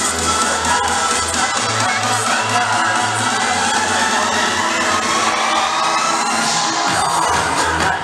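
Loud DJ dance music with a repeating heavy bass, and a packed dancing crowd cheering and shouting over it.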